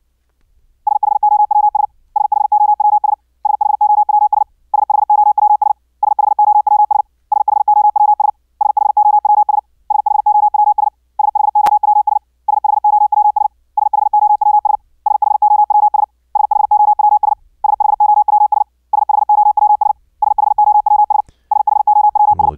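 High-speed Morse code at about 65 words per minute from a sine-wave code practice oscillator, the same word keyed over and over in bursts of about a second with short gaps. About four seconds in, the tone gains a rougher fringe of edge noise (key clicks) as the final bandpass filter is bypassed. It turns clean again for a few seconds in the middle, then rough again.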